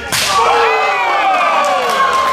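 A single sharp, loud slap of an open-hand strike landing on bare skin, the chest-chop crack of pro wrestling. It is followed at once by several crowd voices calling out together in long cries that fall in pitch.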